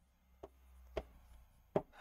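Pen tip tapping and scraping on a writing board as words are written by hand: three light taps, roughly half a second to three quarters of a second apart, with faint scratching between them.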